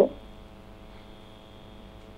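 Faint steady electrical hum, a few even tones at once, heard through a telephone line.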